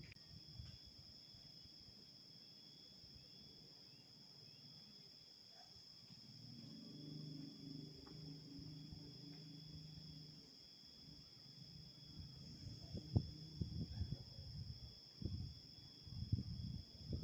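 Steady high-pitched trilling of insects. It carries on unchanged under a low hum that swells for a few seconds midway and a run of soft low knocks near the end.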